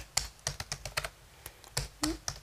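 Typing on a computer keyboard: about ten irregular key clicks as a command is keyed in.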